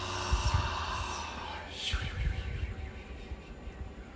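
A long, breathy exhale let out with sound, a release breath in breathwork, fading over about a second and a half. A quick breath in follows about two seconds in, with soft background music underneath.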